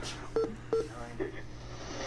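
Two short electronic beeps from the buttons of a RadioShack weather radio as they are pressed, about half a second apart.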